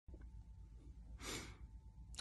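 A man's single short breath a little over a second in, lasting about a third of a second, over a faint low hum of room tone.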